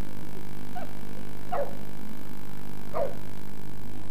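A boxer dog barking three short times, each bark dropping in pitch, over a steady low hum.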